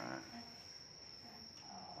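A faint, steady high-pitched whine, one unbroken tone that holds without change throughout, over quiet background noise.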